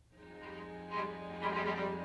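String quartet of two violins, viola and cello entering from silence with bowed, sustained chords that swell steadily louder.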